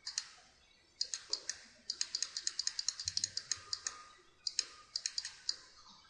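Computer keyboard keys tapped in quick runs of several light clicks a second, with short pauses between the runs.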